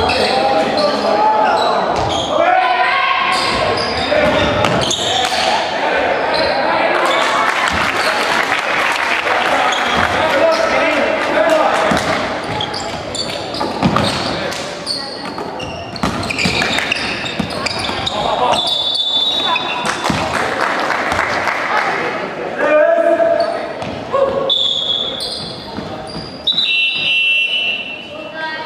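Basketball game in a reverberant gymnasium: a ball bouncing on the wooden court, with voices of players and spectators calling out throughout.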